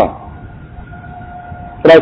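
A faint steady tone holds for about a second and a half in a pause between stretches of a man's speech.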